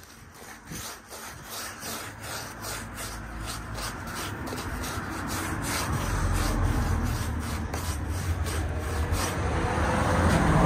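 A paintbrush scrubbing paint onto a rough concrete step in short strokes, about two a second. Under it, a low rumble grows steadily louder through the second half.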